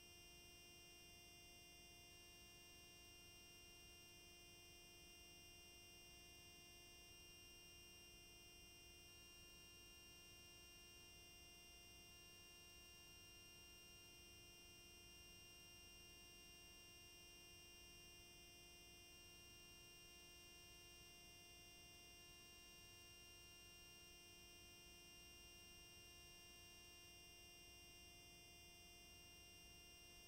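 Near silence: a faint, steady hum made of several fixed tones, with a low even hiss, unchanging throughout.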